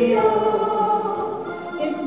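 Yodeling by several voices together with music: held sung notes that step from pitch to pitch.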